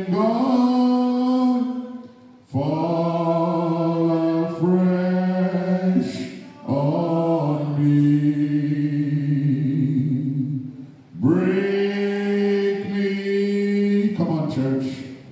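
A man singing unaccompanied into a microphone, slow and chant-like, holding long notes in four phrases with brief breaks for breath between them.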